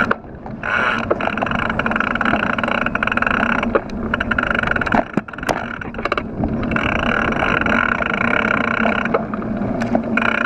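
Mountain bike rolling on asphalt, with low tyre rumble throughout. Over it a steady high buzz, typical of the rear freehub ratchet while coasting, comes and goes: it drops out a little before four seconds in and again near the end, and light clicks sound in the gaps.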